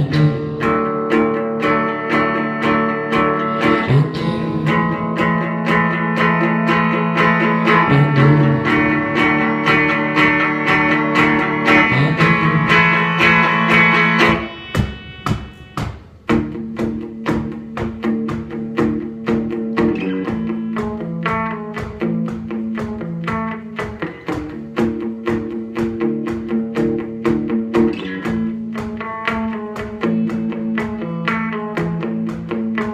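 Solo Telecaster-style electric guitar playing an instrumental break, with no voice. Ringing chords change about every four seconds, drop away briefly about halfway through, then go on as a more rhythmic picked and strummed pattern.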